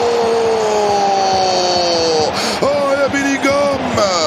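A football commentator's long, drawn-out cry, held for about two seconds and slowly falling in pitch, reacting to a wasted chance in front of goal. It is followed by short excited vocal exclamations, over the steady noise of a stadium crowd.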